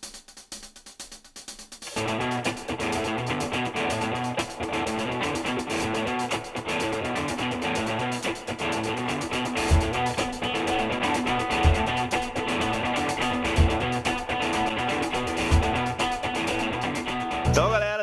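Background music: a guitar track with drums that comes in about two seconds in after a quieter start. In the second half a deep drum beat lands about every two seconds.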